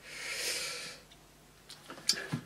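One breathy exhale through the nose, about a second long, swelling and fading away.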